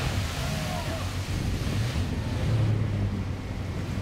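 Jet boat spinning on a river and throwing up spray, heard as a steady rush of water and engine noise with wind buffeting a compact camera's built-in microphone.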